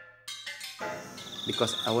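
A few struck gamelan metallophone notes, then a sudden change to crickets trilling in a steady pulsing chirp. A man's voice starts near the end.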